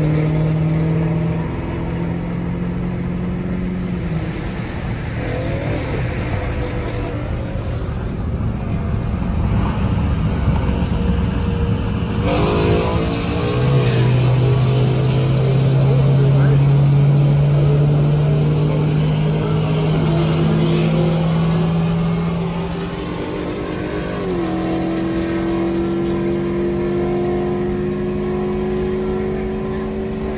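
Dodge V8 engine droning at highway speed, heard from inside the cabin, its pitch creeping slowly upward as the car gains speed. About twelve seconds in there is a sudden noisy burst with a falling pitch, after which a lower drone climbs steadily, and near the end the pitch steps up again.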